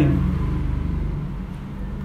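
Low, steady rumble of a motor vehicle, gradually fading.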